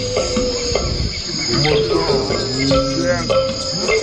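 Show soundtrack over loudspeakers: wildlife calls with sliding whistles and a quick trill about three seconds in, over music and a steady high insect chirring.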